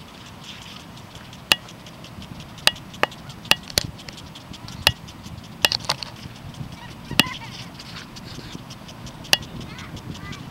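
Impact lawn sprinklers ticking: about ten sharp, irregularly spaced clicks over a steady hiss of water spray.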